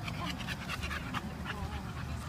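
A dog panting, quick breaths about three or four a second, over a steady low rumble.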